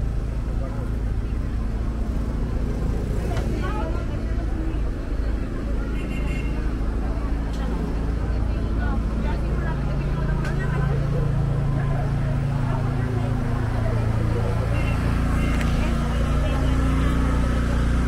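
Street ambience: a motor vehicle's engine running nearby, getting louder in the second half, under indistinct background voices.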